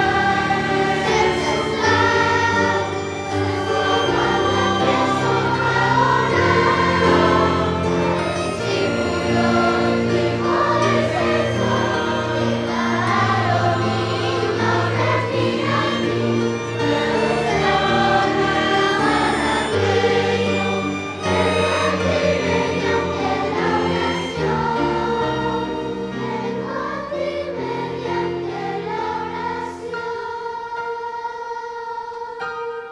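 Children's choir singing a sacred song with a small string ensemble of violins and cello accompanying, growing softer over the last few seconds.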